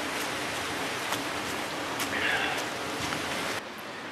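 Steady rushing hiss of running water, with a few faint rustles and clicks of footsteps on wet moss and leaf litter; the hiss drops off sharply near the end.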